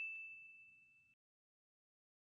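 The fading ring of a single ding from the channel's logo sound effect: one steady high tone that dies away within the first second.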